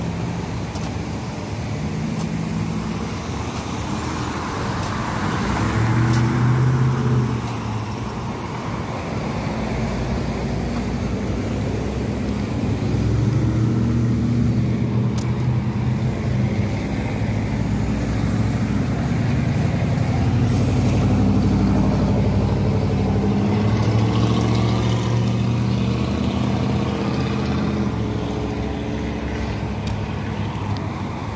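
Road traffic: cars driving past with engine noise that swells and fades, one louder pass about six seconds in and a longer stretch of heavier engine noise through much of the second half.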